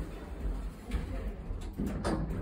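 Passenger lift closing its doors and starting off: a steady low rumble with a light knock about a second in.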